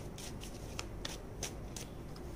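A tarot deck being shuffled by hand: a run of short, light card clicks at an uneven pace, about three a second.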